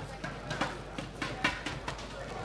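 A quick, uneven run of sharp slaps, six or seven in the second half, over the steady noise of a sports hall.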